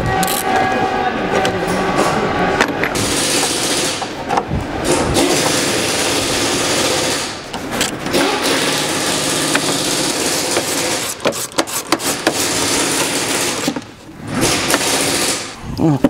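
A tool undoing the deep-set bolts of an air filter housing in an engine bay: long spells of steady mechanical noise broken by a few short clicks.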